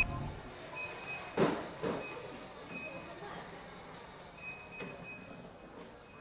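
Faint warehouse background noise with a thin high beep-like tone that sounds briefly several times, and two short knocks about a second and a half and two seconds in.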